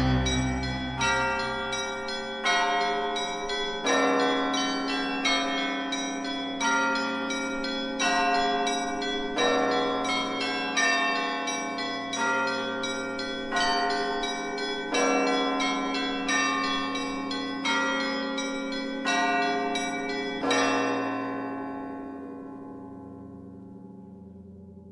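Several Orthodox church bells rung by rope in a belfry, a strike about every 0.7 s across several pitches, each strike ringing on into the next. The strikes stop about 20 seconds in and the last ringing dies away slowly.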